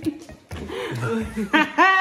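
People chuckling and laughing, with a long drawn-out laugh near the end.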